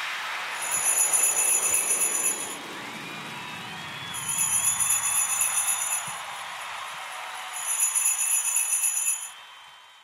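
Jingle bells shaken in three bursts of about two seconds each over a steady hiss, all fading away in the last second.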